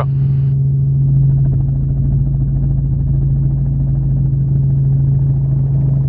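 Steady low drone of a helicopter's engine and rotors in flight, heard from on board.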